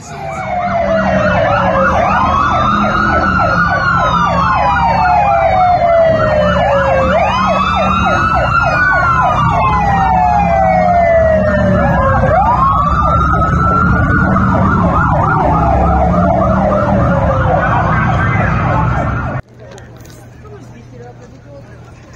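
Police sirens wailing, the pitch rising and falling in slow sweeps about every five seconds, with a faster pulsing siren tone over them. The sound cuts off suddenly about three seconds before the end, leaving quieter street noise.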